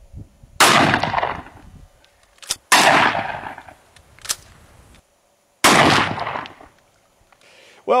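Three shots from a short-barreled shotgun firing handloaded quarter-inch steel ball-bearing buckshot, about two to three seconds apart, each blast followed by a long echoing tail.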